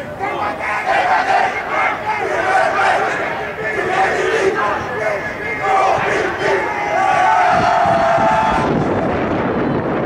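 Football players in a huddle shouting together in a team chant, many voices overlapping, with one long drawn-out shout about seven seconds in.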